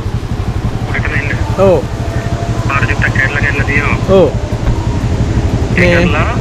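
Motorcycle engine running steadily, a continuous low pulsing rumble, with a man's voice talking over it in short stretches.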